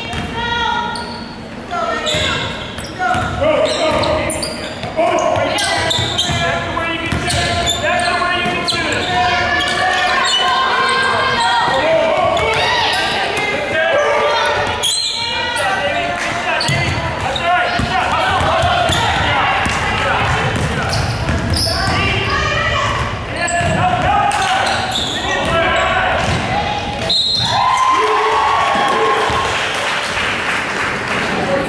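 Overlapping voices of players and spectators talking and calling out in a large, echoing gym, with basketballs bouncing on the hardwood court.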